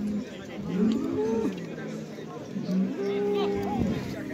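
Bull lowing in two long, drawn-out calls during a head-to-head fight between two bulls.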